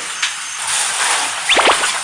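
Steady hiss of food sizzling as it cooks. About one and a half seconds in, a brief high squeal glides sharply down in pitch.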